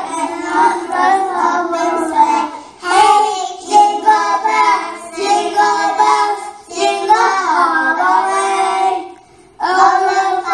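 A small group of young children singing together, with a short pause near the end.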